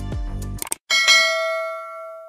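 Background music with a beat cuts off, then two quick clicks. About a second in, a single bright notification-bell chime rings out and fades: the sound effect of a subscribe-and-bell button animation.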